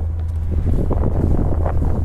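Wind buffeting the microphone over the steady low drone of a sailing yacht motoring along.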